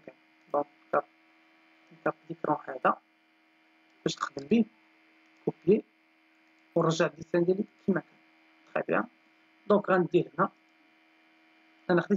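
Steady electrical mains hum, broken by short, scattered bursts of a voice with pauses between them.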